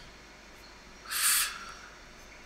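A short, sharp breathy exhale, a hiss about half a second long a little over a second in, from a person pausing in frustration.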